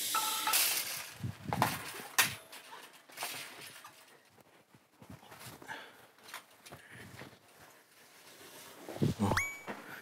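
Handling noises of a soaked comforter being washed and thrown over a clothes-drying rack: scattered knocks, rustles and clatter. A short rising tone comes near the end.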